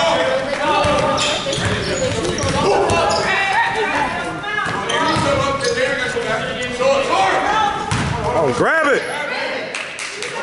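Basketball bouncing on a hardwood gym floor, with voices calling out over it in a large echoing gym, and a high squeak about nine seconds in.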